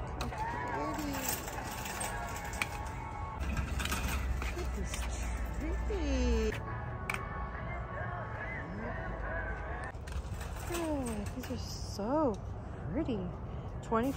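Background music over store ambience with faint, indistinct voices, occasional light clicks, and a low hum for a few seconds in the middle.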